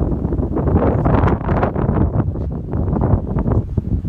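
Wind buffeting the microphone: a loud, irregular rumble that rises and falls in gusts.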